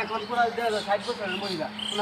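People talking in quick, animated speech, with a steady low hum underneath.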